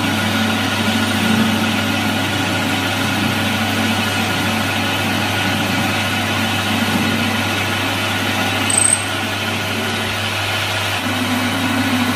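Capstan lathe running steadily with a hum while its parting-off tool cuts through the rotating bar stock to separate the finished rivet. A brief high squeak about nine seconds in, after which the sound drops slightly.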